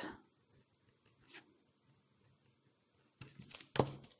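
Pen scratching on paper while a short label is handwritten: one faint stroke about a second in, then a quick cluster of short scratches near the end.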